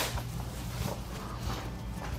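A sharp knock as a wooden dining table is lifted, then faint footsteps and handling noise while it is carried, over a steady low hum.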